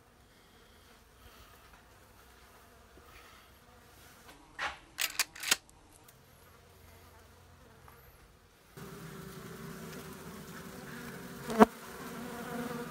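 Honey bees buzzing in a hive body around their cut-out comb, a steady low hum that sets in about three-quarters of the way through; the colony has calmed down considerably since the comb went into the box. Before that only faint sound, with a few sharp clicks near the middle and another just before the end.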